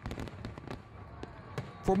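Fireworks sound effect: scattered crackling pops and sharp cracks over a low rumble. A man's voice begins near the end.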